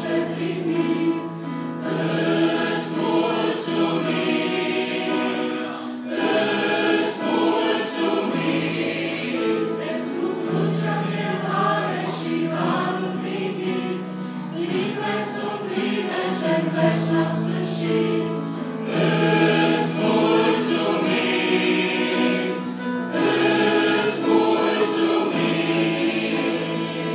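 Mixed choir of men's and women's voices singing a hymn in parts, in long held phrases of a few seconds each.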